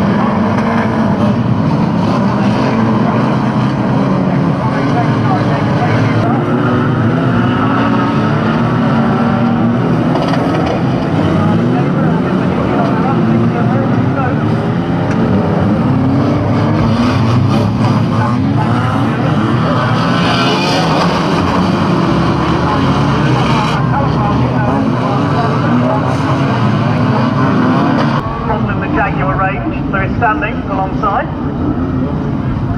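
Engines of several banger racing cars running hard together, their pitches rising and falling in overlapping revs as they race. The sound changes and drops a little near the end.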